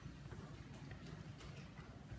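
Faint, irregular light taps over a low, steady rumble of room tone.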